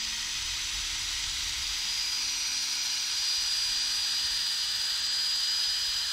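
Power sanding a wooden bowl as it spins on a lathe: a foam-backed sanding disc on a handheld drill pressed against the wood makes a steady hiss, with the thin high whine of the tool running through it.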